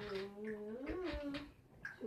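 A person's long, drawn-out hummed "mmm", the pitch sinking, then rising and falling again about a second in, and ending about one and a half seconds in.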